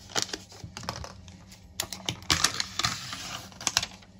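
Thin clear plastic snap-on lid being pried off a round deli tub: a run of sharp clicks and crackles of flexing plastic, thickest for about a second just past the middle as the lid comes free.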